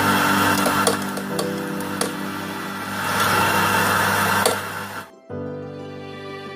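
Gaggia electric coffee grinder running, grinding beans into a portafilter, with a few sharp ticks; it stops about five seconds in. Background music plays throughout.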